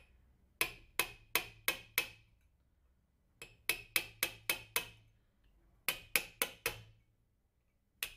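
Surgical mallet tapping a wooden-handled osteotome to chisel the anterior osteophytes off the ankle joint of a synthetic bone model. Three runs of sharp, even taps about three a second: five, then about seven, then four, with short pauses between.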